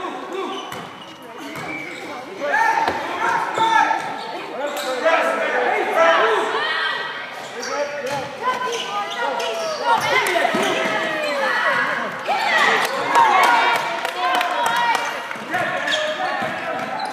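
Basketball game on a hardwood gym floor: the ball bouncing, sneakers squeaking in short curving squeals, and indistinct voices calling out, all echoing in the large gym.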